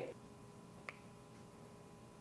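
Near silence: room tone with a faint steady hum, broken by one small sharp click about a second in.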